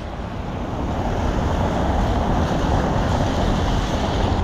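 Heavy rain pouring on a city street, a steady hiss with a low rumble of wind on the microphone, growing slightly louder.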